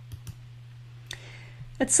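A few faint clicks over a steady low hum, and a woman's voice begins near the end.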